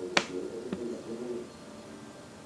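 A sharp click about a quarter second in, then a fainter click about half a second later, over faint background sound.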